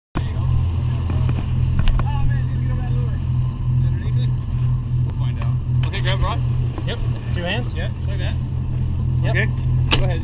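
Sport-fishing boat's engine running with a steady low drone under way through choppy water. Short shouted voices break in several times in the second half.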